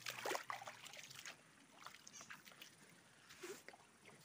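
A hand splashing and dabbling in shallow stream water: a quick cluster of small splashes in the first second or so, then a few faint ones near the end.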